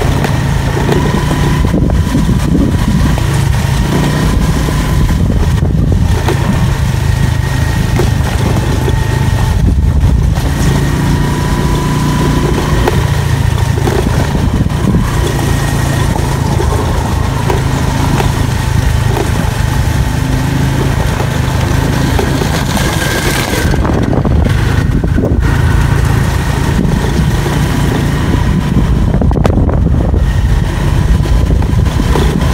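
Motorcycle engine running steadily while riding along a gravel forest track: a constant low rumble with a faint steady whine above it.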